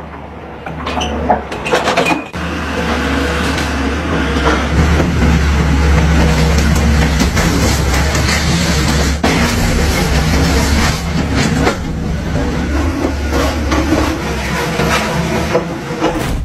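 XCMG hydraulic excavator's diesel engine running hard, louder from about two seconds in, as its bucket knocks down the masonry walls of a house, with a few sharp knocks of breaking wall and debris over the engine.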